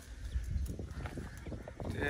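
Tree branches being snapped off by hand for firewood: faint, irregular cracks and rustling over a low wind rumble on the microphone.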